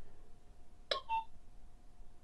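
Anran C2 battery security camera giving a short electronic beep about a second in, its signal that the reset button has been held long enough and the camera is resetting.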